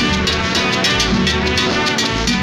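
Guaracha dance music played loud over a sonidero sound system, drums and percussion keeping a steady beat.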